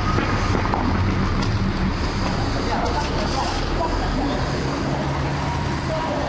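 Steady street traffic noise with faint voices mixed in.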